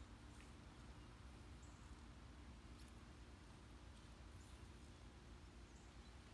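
Near silence: a faint low background rumble with a few very faint ticks.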